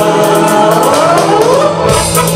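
Loud live band music with singing, amplified through a concert sound system, with a steady beat and a rising vocal line in the second half.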